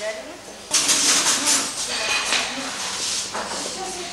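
Indistinct voices over a loud hissing noise that sets in about a second in.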